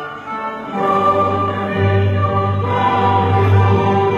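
Choral music with held, sustained notes over an orchestral backing. It dips briefly just after the start, then swells back up about a second in.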